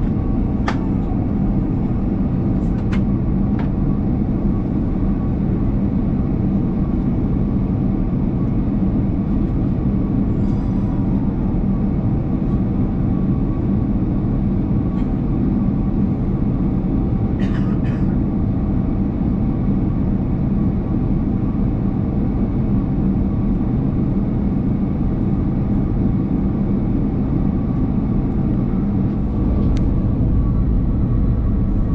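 Steady cabin noise of an Airbus A330-300 in descent: the jet engines' drone and the rush of air past the fuselage, with a few steady tones running through it. A few faint clicks come near the start, and a short rattle a little past halfway.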